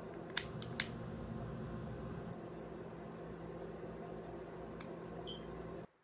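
A handheld lighter being struck to light a blunt: three sharp clicks within about half a second, then a steady low hum, with one more faint click later. The sound cuts out abruptly just before the end.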